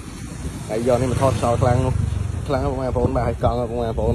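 A man speaking in two short stretches, with a low rumble underneath that is strongest for about a second in the middle.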